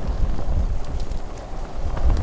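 Wind buffeting the camera's microphone on a moving bicycle, a steady low rumble with the tyres running on a rough path beneath it and a few faint ticks about a second in.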